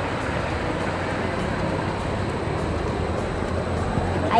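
Steady rush of a shallow river flowing over rocks.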